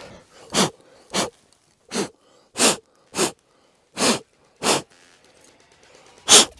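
A person breathing hard in seven sharp, noisy puffs, about one every two-thirds of a second.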